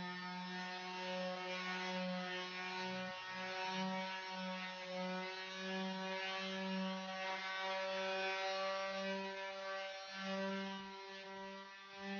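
Electric sander running on a sheet of plywood: a steady motor hum whose loudness rises and falls a little as it is worked across the board.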